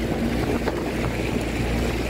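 Small boat's motor running with a steady low hum, with wind buffeting the microphone over the sound of open water.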